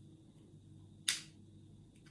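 A single sharp metallic click about a second in, as the key turns in a vintage Century four-lever sliding-door mortice lock with its cover off and the hook bolt snaps across into the locked position.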